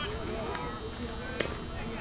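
Distant voices of softball players talking and calling across the field, several at once, with a single sharp click about one and a half seconds in.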